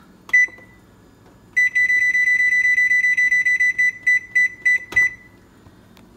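Electronic control panel of a kitchen range beeping as its buttons are pressed to set the timer. One short beep comes about a third of a second in, then a rapid run of beeps for about two seconds as the time is stepped up, then four slower single beeps with a soft click near the end.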